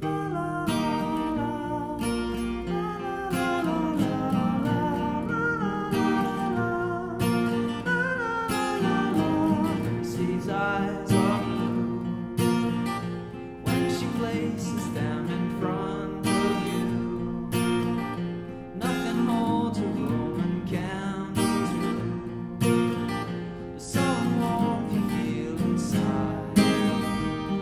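Acoustic guitar strummed in a steady rhythm, about two strokes a second, with a wordless sung melody over it in the first half.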